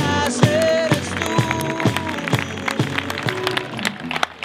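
Rock band music: a steady drum-kit beat under guitars and held pitched notes.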